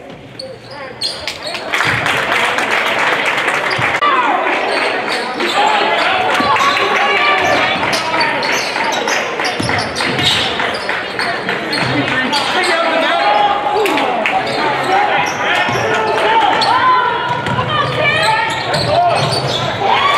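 Live game sound of an indoor basketball game on a hardwood gym floor. The ball is dribbled in repeated knocks, and players and spectators call out indistinctly, echoing in the hall. It gets louder about two seconds in.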